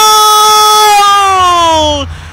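A football commentator's long drawn-out goal shout: one held voice note that slides down in pitch near the end and then breaks off.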